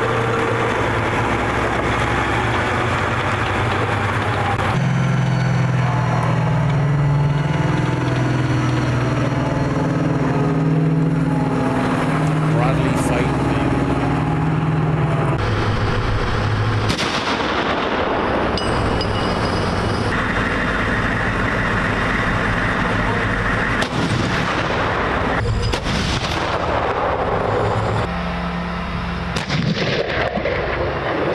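Armoured tracked vehicles with their engines running, mixed with gunfire and blasts. The sound changes abruptly every few seconds with the cuts of an edited montage.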